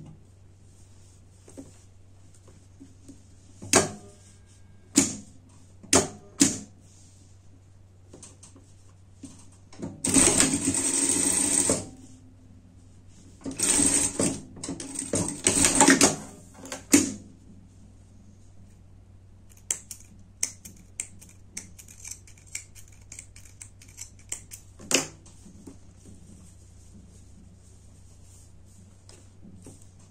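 Industrial straight-stitch sewing machine stitching in two short runs, about ten and fourteen seconds in, as a seam is sewn through fabric and elastic. Sharp clicks and handling noises come before, between and after the runs.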